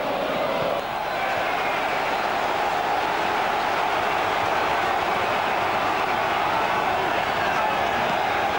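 Football stadium crowd: a steady din of many voices with no break.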